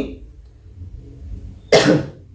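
A man coughs once, sharply, into his hand near the end.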